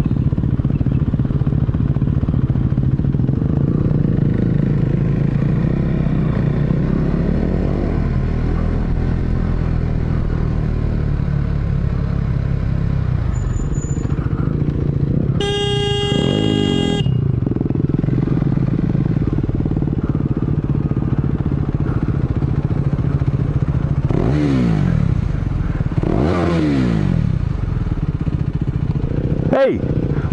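Motorcycle engine running under way, with wind and road noise. A vehicle horn sounds for about a second and a half midway, and near the end the engine revs drop twice.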